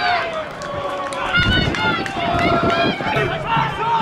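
Several voices shouting and calling out across a football pitch, overlapping in short bursts.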